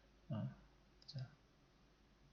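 A man's short hesitation sound "uh", then a soft click with a brief vocal sound about a second in, over quiet room tone. The click fits a computer mouse being clicked to start a video.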